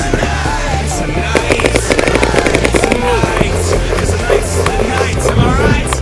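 Background music with a steady bass beat, with a fast, even run of sharp clicks between about one and three seconds in.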